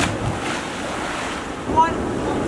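A jumper hitting the water of an ocean rock pool with a sharp splash right at the start, over a steady wash of surf and sloshing water. A short shout rings out near the end.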